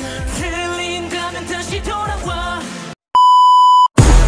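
Pop song with a male singing voice over a beat, cut off abruptly about three seconds in. After a brief silence a loud, steady beep at one pitch sounds for under a second near the end.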